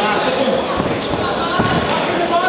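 Spectators shouting around a boxing ring, with a few dull thuds from the boxers' gloves and footwork on the ring canvas.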